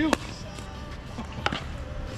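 Pickleball paddle striking the plastic ball with a sharp pop, the loudest just after the start, then another sharp pop about a second and a half later.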